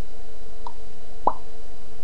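Two brief soft plops, the second and louder one a little past halfway, over a steady faint tone and low background rumble.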